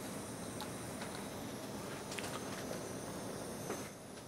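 Steady background hiss of room noise with a few faint clicks.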